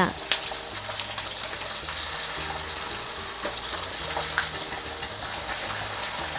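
Eggs frying in hot oil in a cast-iron skillet, with a steady sizzle and a few light clicks.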